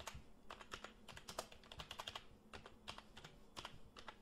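Faint typing on a computer keyboard, a quick, irregular run of keystroke clicks.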